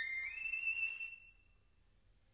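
Background violin music ending its phrase on one long high note that fades out about a second in.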